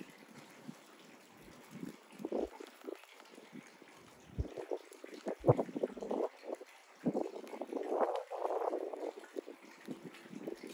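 Propane-fired melting furnace burning, its flame noise rising and falling unevenly, while a steel rod pushes scrap copper wire down into the hot crucible. There is a sharp clink about five and a half seconds in.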